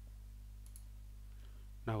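Steady low hum of room tone, with a couple of faint ticks a little under a second in. A man's voice starts at the very end.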